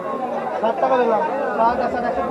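Several people talking at once: overlapping voices of background chatter, with no other sound standing out.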